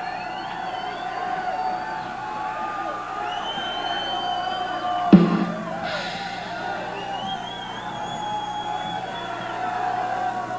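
Concert crowd noise after a live metal show, with long high whistles gliding over it and a steady ringing tone underneath. About halfway through there is a single loud thump.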